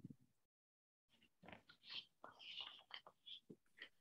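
Near silence, with faint murmured speech in short broken fragments over the video call.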